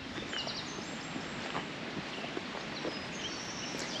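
Quiet outdoor ambience: a steady low background hiss with a few faint, short high chirps early on.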